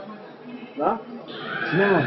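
A man's short wordless vocal sounds: a quick upward call about a second in and a rising-then-falling call near the end. A high drawn-out tone starts just before the second call.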